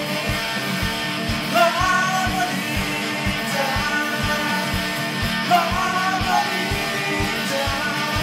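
Rock song with layered guitars over a steady beat.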